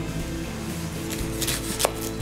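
Chef's knife cutting through a red onion on a cutting board, a few sharp cuts in the second half, over steady background music.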